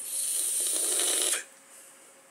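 A person drawing hard on an e-cigarette (vape mod), a steady airy hiss of air pulled through the device for about a second and a half, then stopping abruptly.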